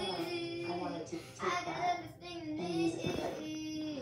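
A young girl singing, with a few held notes, the longest about three seconds in.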